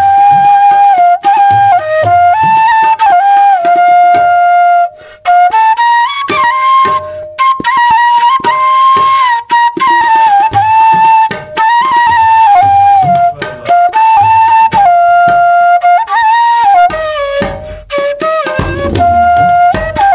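Bamboo bansuri flute playing a slow, stepping melody in phrases with short breaths between them, with tabla drums accompanying underneath.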